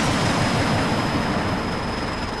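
Noisy electronic texture from a modular synthesizer patch: a dense hiss-like wash with rapid, repeated falling pitch zaps underneath and a steady high whistle tone that comes in just after the start.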